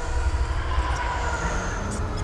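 A steady low rumble with faint thin tones ringing above it, a cinematic sound-design effect from a movie trailer soundtrack, heard between stretches of music.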